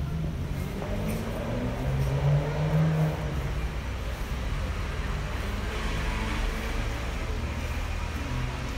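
Street traffic with a motor vehicle engine running as a low, steady rumble, swelling to its loudest about two to three seconds in.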